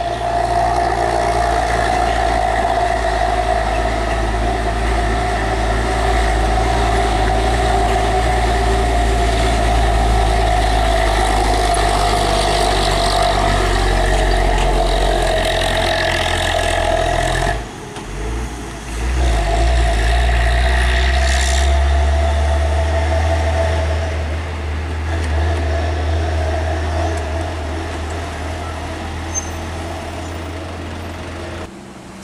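Heavy truck diesel engine running loud and steady at low road speed on a hill. The sound drops out briefly about two-thirds of the way through, then a truck engine runs on at a lower, steadier pitch.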